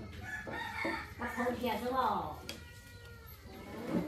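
A rooster crowing once, about a second in, its call ending in a falling pitch.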